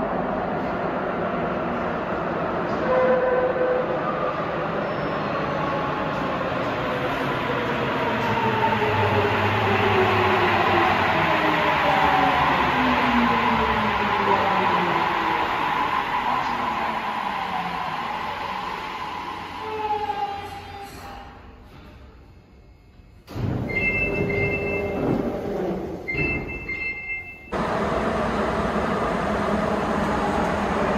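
Sapporo Municipal Subway rubber-tyred train pulling into the station, its inverter motor whine falling steadily in pitch as it brakes to a stop. After a cut, a short high chime sounds twice.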